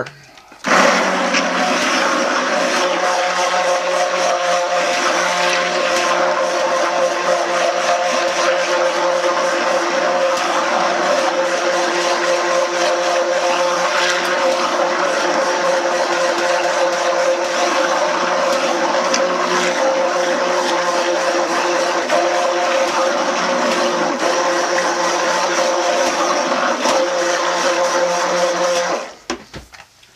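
Handheld immersion (stick) blender running steadily in a pot of thick soap batter, mixing the oils and lye solution to heavy trace. It starts just after the beginning and cuts off about a second before the end.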